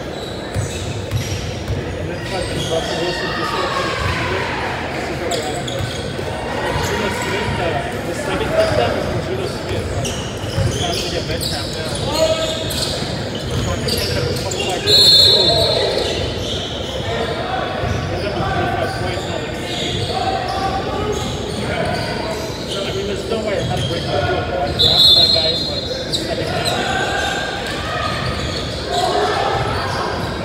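Basketball game in an echoing gym hall: a ball bouncing on the hardwood floor among indistinct players' voices, with a referee's whistle blown twice in short, trilling blasts, about fifteen and twenty-five seconds in.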